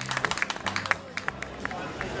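Scattered handclaps from a few people, several a second and irregular, thinning out and stopping about three-quarters of the way in, over a background of crowd chatter.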